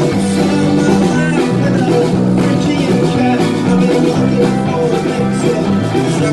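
A live band playing a song, with electric guitar to the fore over drums.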